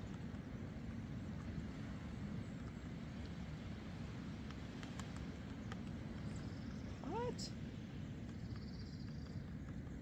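Spoon stirring coffee in a camping mug, with a few faint clinks, over a steady low outdoor rumble. About seven seconds in, a single short animal call rises and falls in pitch.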